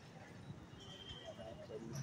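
Passenger train coaches rolling along a distant track, the wheels knocking over the rail joints with a low rumble. A faint voice comes in near the end.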